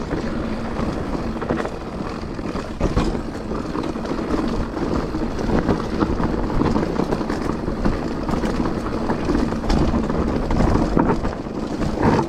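Downhill mountain bike rolling fast over a loose, rocky gravel trail: tyres crunching over stones and the bike rattling with frequent knocks from the rough ground, with wind rushing over the camera's microphone.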